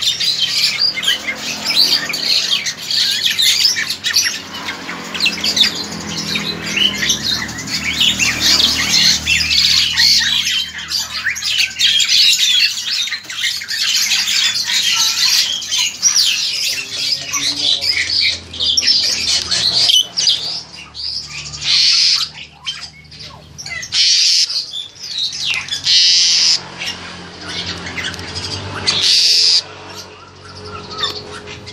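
Black-collared starlings (jalak hongkong) calling in a cage: a dense, unbroken stream of harsh squawks and chatter. In the last third the calls break up into separate loud bursts about every second or two.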